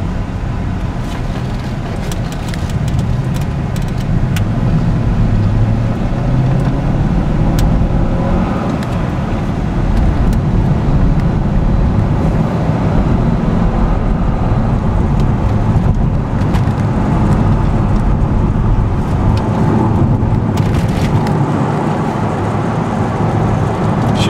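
2005 Corvette Z51's LS2 V8 running under way with tyre and road noise, heard from inside the cabin. The sound gets louder about four seconds in and again about ten seconds in as the car picks up speed.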